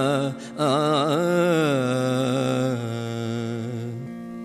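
A man singing a Kannada verse in gamaka style, holding long notes with wavering, ornamented pitch over a steady drone. There is a short break for breath about a third of a second in, and the singing fades toward the end.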